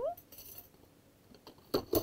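Stainless steel slotted spoons clinking against one another as one is laid into a plastic drawer, with a few faint clinks and a sharp clatter near the end.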